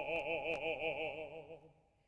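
Operatic tenor holding one sung note with a wide vibrato, which fades away about a second and a half in.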